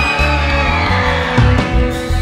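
Live band playing: held electric guitar chords ringing over a steady bass.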